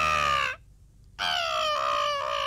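A cartoon baby doll's voice giving long, high wails: one cry ends about half a second in, and another begins just after a second and carries on.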